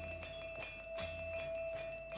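Children's band music with accordions. Long held notes sound over quick struck notes, two or three a second, and a low drum beat about once a second.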